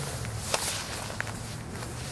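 Two short sharp clicks, the louder about half a second in and a smaller one just after one second, over steady outdoor background noise with a low hum.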